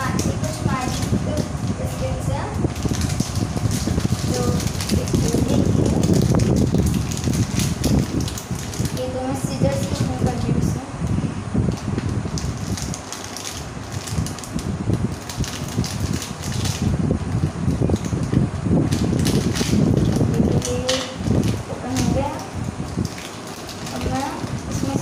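Plastic biscuit wrapper crinkling and rustling close by as the packet is opened and the biscuits are taken out, with many small crackles. Brief snatches of voice come through a few times.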